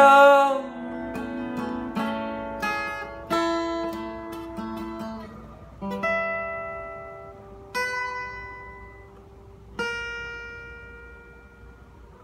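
Steel-string acoustic guitar being fingerpicked in the song's closing bars: notes and chords come further and further apart and are left to ring out and decay. A last sung note fades away in the first half-second.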